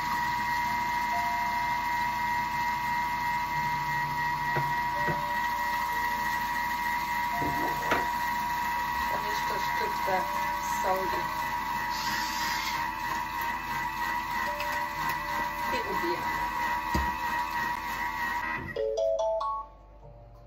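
Thermomix TM6 running its butterfly whisk at speed 3.5, whipping egg whites with the measuring cup off: a steady motor hum carrying a high tone. A grinder turns briefly a little past the middle. The motor stops shortly before the end, followed by a few short beeps.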